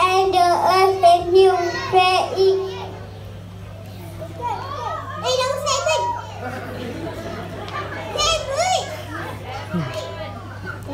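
A group of young children reciting together in a slow, held, chant-like unison for about the first three seconds, then a loose scatter of children's voices overlapping. A steady low hum runs beneath.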